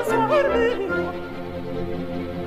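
An opera singer holds a phrase with wide vibrato over an orchestra, the voice ending about a second in; the orchestra then carries on alone, quieter, with a repeating accompaniment figure.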